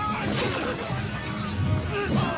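Battle-scene film soundtrack: music under shouting voices, with a crash about half a second in.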